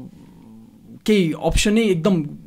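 Conversational speech: a soft, low murmur in the first second, then a voice talking at full level from about a second in.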